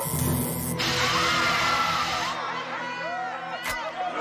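A jet of gas hissing from a metal canister's nozzle for a little over two seconds, then cutting off suddenly, over a man screaming, shouting voices and music. A single sharp bang near the end.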